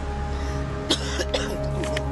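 Background music of steady sustained tones, with a man coughing a few short times from about a second in.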